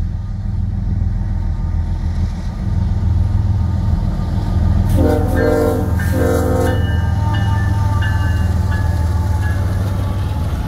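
CN freight diesel locomotive approaching with a steady low engine rumble that grows louder as it nears. About five seconds in its air horn sounds two blasts, the first about a second long and the second shorter, followed by fainter horn tones.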